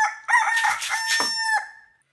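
A rooster crowing: one long cock-a-doodle-doo that breaks off about a second and a half in.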